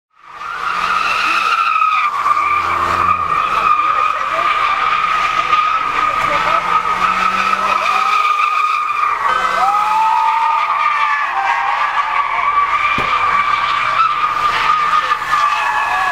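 Car tyres squealing in one long, unbroken high screech as a car spins donuts, with crowd voices underneath.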